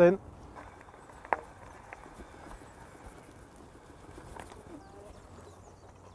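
Eleglide M1 Plus e-bike ridden over a dirt trail: a faint, even rolling and wind noise with a few light knocks and rattles, the sharpest about a second in.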